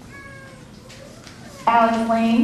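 A woman's voice, amplified in a large hall, starts reading out the next name near the end, the vowel drawn out and held at a steady pitch. Before it there is only low hall background and a faint, brief high tone.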